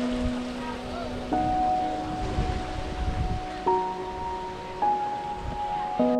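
Slow, calm background music of long held notes, the chord changing three times, over a steady rush of outdoor wind and sea noise with low gusts.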